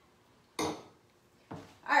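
Glassware handled at a kitchen counter: a sharp clink-and-knock about half a second in and a smaller knock about a second later, as glasses are set down and moved about.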